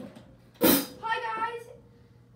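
A single sharp hit about half a second in, followed by a child's voice speaking briefly.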